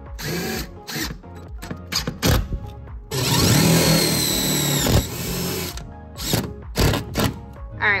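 DeWalt cordless drill driving self-tapping wood-to-metal screws through a wooden frame board into the metal bus floor, in several short bursts, with background music mixed in.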